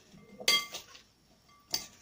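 A kitchen utensil clinking against a dish twice, each strike sharp with a short ringing tone: once about half a second in and again near the end.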